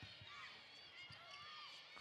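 Faint basketball-court sound during live play: sneakers squeaking on the hardwood, a few soft ball bounces and distant crowd murmur.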